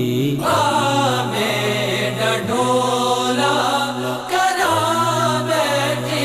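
Devotional singing: a voice sings long, drawn-out phrases over a steady low drone, pausing briefly about every two seconds.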